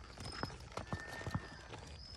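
A mule's hooves clip-clopping at a walk on asphalt: about five separate hoof strikes.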